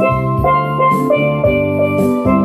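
Double seconds steel pans struck with mallets, playing a melody in a run of ringing notes over an accompaniment with a sustained bass line and drum beats.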